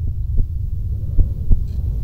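A low, steady rumbling drone from the soundtrack, with a few dull thumps breaking through it.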